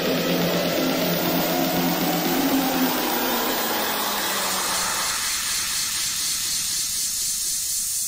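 A white-noise riser in an electronic dance mix: a rushing hiss that swells and brightens while the lower tones of the track fade away about five seconds in.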